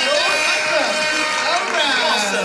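Several voices at once over music, louder than the talk around it.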